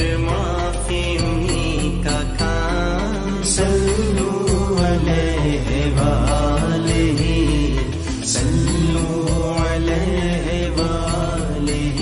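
Devotional vocal music: a voice sings a melismatic, chant-like line over a steady low drone, with a few sharp percussive hits.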